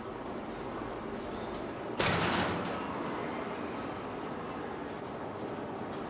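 Steady machinery noise from a pottery factory's kiln, with a sudden louder rush about two seconds in that fades away over a second or so.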